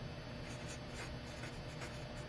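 Felt-tip marker writing on paper: a faint run of short scratchy strokes as a word is lettered, over a steady low hum.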